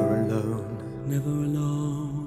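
Male vocal ensemble singing long held chords, changing to a new chord about a second in.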